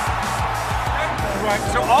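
Background music with a steady low beat over a stadium crowd cheering. A man's voice begins near the end.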